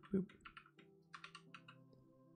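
Computer keyboard typing: a run of faint, quick keystrokes.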